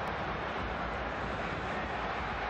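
Steady stadium crowd noise from a football match: an even wash of sound from the stands, with no single shout, whistle or chant standing out.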